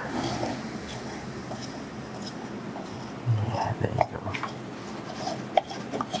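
Light scraping and small knocks of a plastic mixing cup against a silicone mould as wet Jesmonite is scooped and worked into it, over a steady room hiss.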